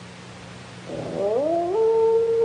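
A drawn-out animal howl on the film's soundtrack: it starts about a second in, rises in pitch, then holds a long steady note. Before it there is only a faint low hum.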